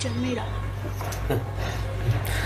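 A drawn-out, whiny vocal sound that ends within the first half second, then a steady low hum with only faint brief sounds.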